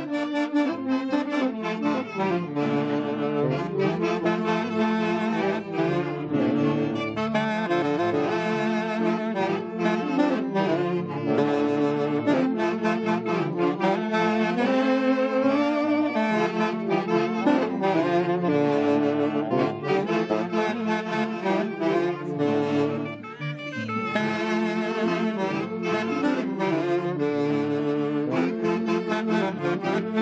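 A band of several saxophones playing a lively Santiago dance tune together, the melody carried in unison and harmony over a steady beat, with a short break in the phrase about three-quarters of the way through.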